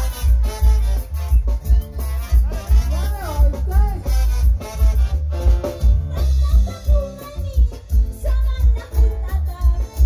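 Live band music with women singing into microphones over a heavy, regular bass beat.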